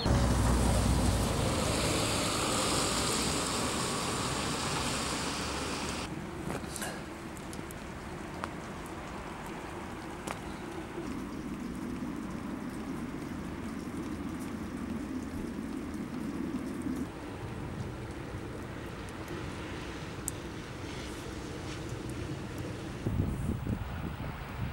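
Outdoor ambience of wind and distant town traffic as a steady wash of noise. It is louder and rumbling for about the first six seconds, then changes suddenly to a quieter, even hum.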